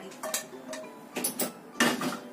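Kitchenware clinking and knocking, a few short clinks with the loudest near the end.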